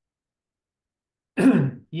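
Silence, then about a second and a half in a man clears his throat once, briefly.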